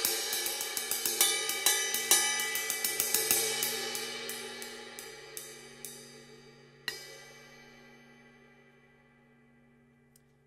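Paiste Color Sound 900 20-inch ride cymbal struck with a drumstick, about four strokes a second, growing steadily softer, then one last stroke about seven seconds in that rings out and fades away. The ride sounds a little dry, with short sustain.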